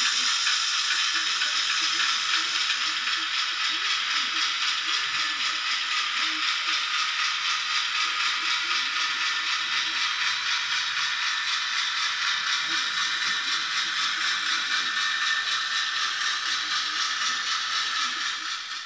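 Class 08 diesel shunter running, a steady mechanical noise with a fast, even clatter.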